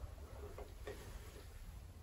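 Inside a 1978 ZREMB passenger lift cabin: a faint low hum with two light ticks about a second in.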